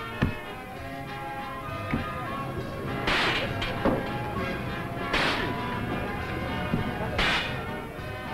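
Three shots from a fairground shooting-gallery rifle, about two seconds apart, fired at the targets over steady background music.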